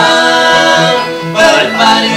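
Live bluegrass band: mandolin and acoustic guitar under male voices singing in harmony, holding a long note and moving to new notes about one and a half seconds in.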